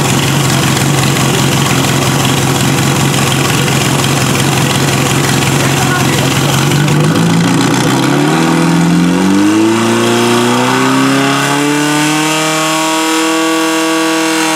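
Portable fire pump engine running steadily, then revving up over a few seconds past the middle and holding at high revs as it drives water through the laid-out hoses to the spraying nozzles.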